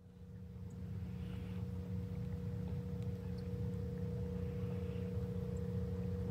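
A steady, low mechanical hum with two held tones, fading in over the first second and then holding level.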